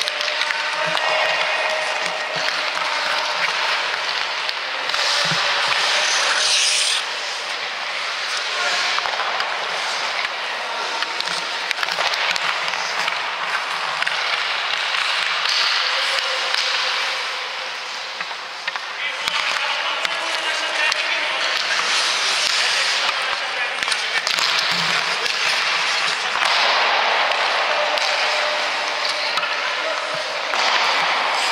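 Ice skates scraping and carving on rink ice, a steady hiss that swells and eases over several seconds at a time, with a few faint knocks from sticks and pucks.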